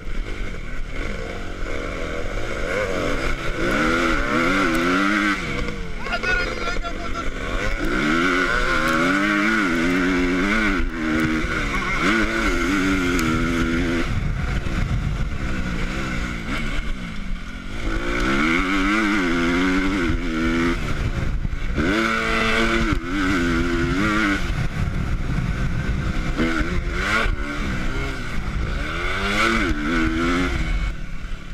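Motocross bike engine heard close up from the bike itself, revving up in repeated rising sweeps and dropping back between them as the rider accelerates, shifts and slows on the dirt track, over a steady rush of wind and engine noise.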